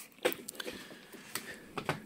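Quiet handling noises: a soft knock about a quarter second in, then a few light clicks near the end.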